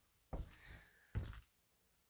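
Two footsteps thud dully on old wooden floorboards, about a second apart.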